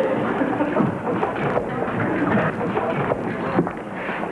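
Sitcom audience laughter: a dense mass of many voices laughing together, dipping slightly near the end.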